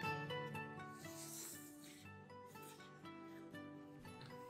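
Soft plucked-string background music, with a person slurping noodles twice, about a second in and again past the middle.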